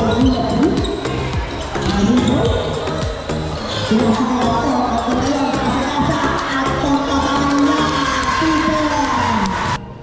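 A basketball bouncing on a gym court amid players' and spectators' shouts, mixed with music; the music and the loudest part cut off abruptly just before the end.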